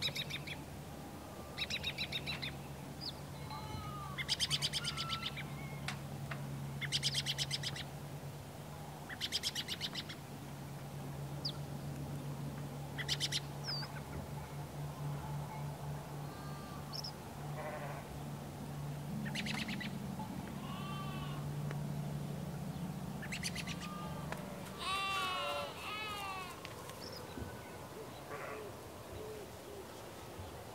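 Farmyard ambience: short bird calls repeat every second or two over a steady low hum that stops about 24 seconds in, and a few pitched animal calls come close together shortly after.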